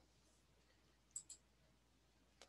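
Near silence broken by two quick, faint clicks a little over a second in, about a tenth of a second apart, like a computer mouse being clicked.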